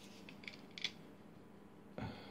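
Faint room tone with a few short, light clicks: two small ones about half a second in and a sharper one just under a second in.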